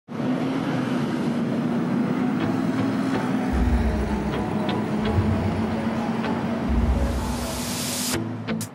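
City street traffic ambience with a steady engine hum and a dense rumble, broken by a few deep booms, and a rising whoosh that builds toward the end.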